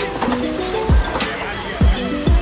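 Music with held melodic notes and two deep bass-drum hits, about a second apart.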